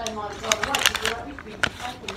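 A short hum of the voice, then crackling and clicks from a paper receipt being handled close to the microphone.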